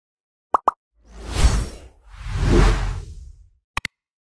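Logo-intro sound effects: two quick pops, then two swelling whooshes with a deep low end, then two more quick pops near the end.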